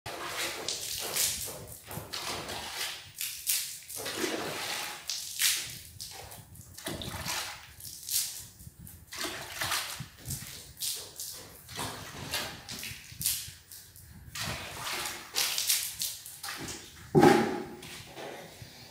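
Water splashed by hand from a bucket onto a bare concrete subfloor in repeated irregular swishes, dampening it before tile mortar is spread. A louder thump near the end.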